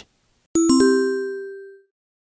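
Bell-like ding sound effect marking a section change: three or four quick strikes about half a second in, the last ringing out and fading away over about a second.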